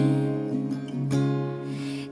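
Acoustic guitar strummed, a chord at the start and another about a second in, each left ringing and fading.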